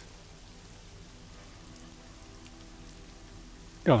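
Faint background ambience in a pause between voices: a steady, even hiss like rain under low sustained music tones.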